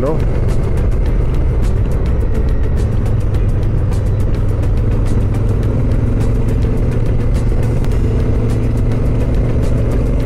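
Adventure motorcycle riding along a gravel road: a steady engine drone with wind and tyre noise. A couple of the engine's tones settle at a new pitch about halfway through, as the speed changes.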